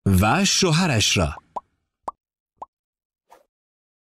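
A short burst of voice lasting about a second and a half, then three quick pops about half a second apart and a fainter one later: the sound effects of a pop-up like-and-subscribe button animation.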